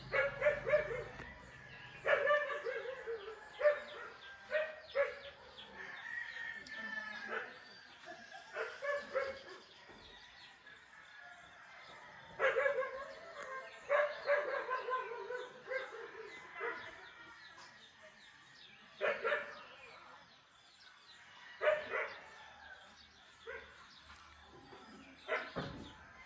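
A dog barking in short bouts of quick barks every few seconds, with birds calling between the bouts.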